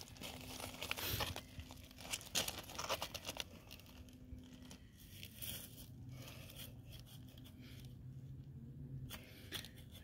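Small metal hand trowel digging into wood-chip mulch and soil, with short irregular scraping and crunching strokes. A faint steady low hum runs underneath.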